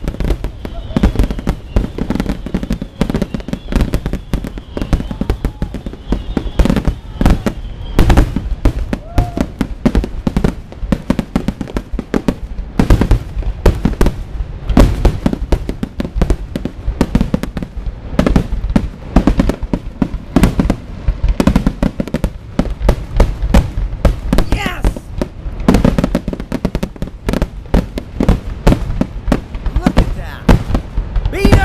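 Aerial fireworks shells bursting in a rapid, continuous barrage, dense booms and crackles with hardly a gap between them.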